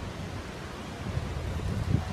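Wind buffeting a phone's microphone outdoors: a steady low rumble with no other distinct sound.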